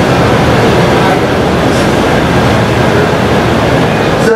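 Audience applauding: a loud, steady clatter of many hands clapping.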